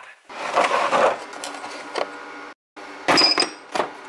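Steel sockets and tools clinking and rattling in a plastic socket-set case as a spark plug socket is picked out. There is a few sharp clinks with a short metallic ring in the second half, after a brief break in the sound.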